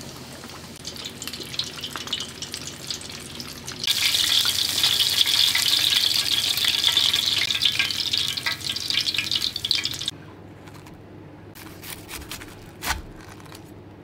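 Breaded ham-and-cheese cutlets deep-frying in hot oil: a dense crackling sizzle that grows much louder about four seconds in and stops abruptly about ten seconds in. After it, a few faint clicks and a single thump near the end.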